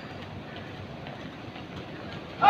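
A squad's shoes marching and shuffling on concrete, a steady, even noise with no single step standing out, over the background noise of a factory.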